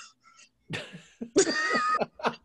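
Short non-speech vocal outbursts, heard over a video call: a rough burst about a second in, then a louder, higher-pitched one near the end.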